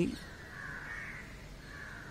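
Crow cawing faintly, twice: a longer call in the first half and a shorter one near the end.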